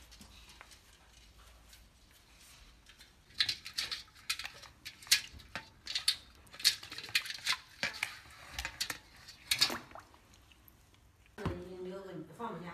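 Chinese pond turtle's claws scraping and tapping on a stainless steel basin as it climbs at the rim: an irregular run of sharp metallic clicks and scrapes beginning about three seconds in and stopping near the end.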